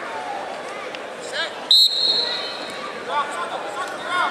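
Referee's whistle blown once, a little under two seconds in, sharp and high, signalling the start of wrestling from the referee's position. Spectators and coaches shout around it.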